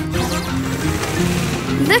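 Cartoon background music with a continuous noisy digging sound effect from the construction machines underneath it.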